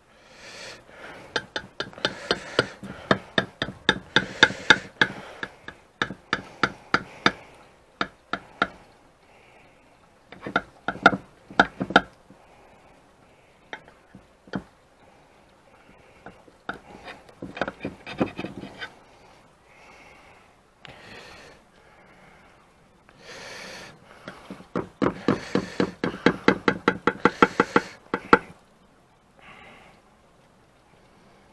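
A long kitchen knife sawing down through a meringue-topped Scheiterhaufen in a glass baking dish: spells of rapid ticking and scraping strokes, four bouts with pauses between.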